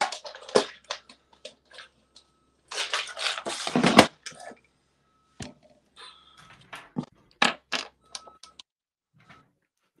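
Handling noise from a clear plastic tackle box of small jig heads: clicks and knocks, with a longer scraping rattle about three seconds in that ends in a sharp click, then more scattered clicks.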